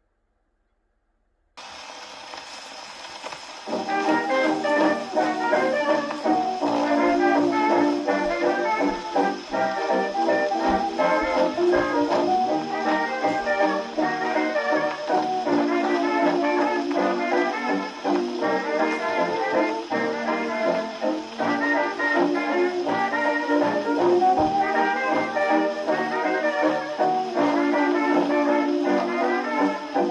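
A 1929 dance-band fox-trot played from a 78 rpm record on an acoustic phonograph. After a moment of silence, the needle's surface hiss runs alone for about two seconds. Then the instrumental band comes in, over steady record surface noise.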